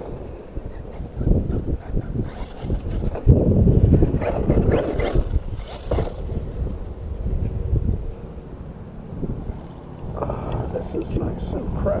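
Wind buffeting the microphone in irregular gusts, with an electric RC truck driving on loose dirt underneath. Short crackly bursts come near the end.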